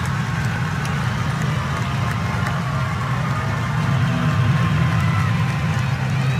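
Stadium ambience just after a goal: a steady low rumble with faint distant shouts and scattered clapping.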